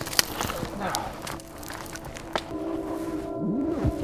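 Wood campfire crackling, with scattered sharp snaps.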